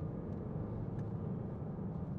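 Steady low road and engine drone inside the cabin of a moving 2015 Range Rover Evoque with the 2.0 TD4 four-cylinder diesel, with a faint click about a second in.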